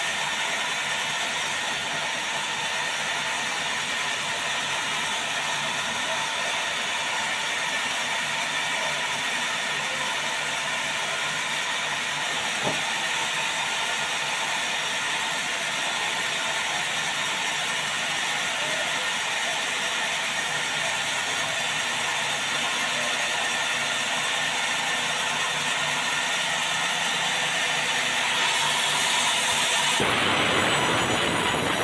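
Vertical band sawmill running steadily, its band blade and drive giving a constant mechanical whine and hiss. A single sharp knock comes about halfway through. Near the end the sound grows a little louder as the blade starts cutting into the hollow timber.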